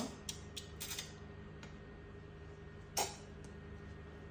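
Small clicks and knocks from handling the plastic lung volume recruitment kit: several light clicks in the first second and one sharper click about three seconds in, over a steady low hum.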